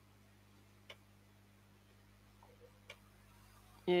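Faint steady electrical hum with a soft sharp click about every two seconds.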